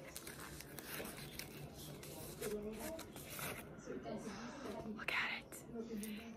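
Quiet rustling and crinkling of a camera's protective wrap being pulled off by hand, with soft murmured speech.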